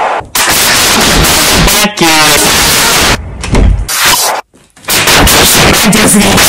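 Extremely loud, heavily distorted and clipped audio of an edited effects remix, chopped with abrupt cuts. A warped voice bends up and down in pitch about two seconds in, and the sound drops out briefly about four and a half seconds in.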